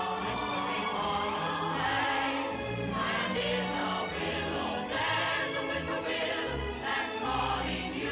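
Choral music: a choir singing held chords at a steady level.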